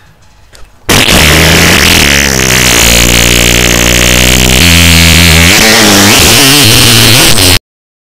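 A very long, loud, distorted fart: a low buzzing tone that starts suddenly about a second in, shifts in pitch a few times over about seven seconds, then cuts off abruptly.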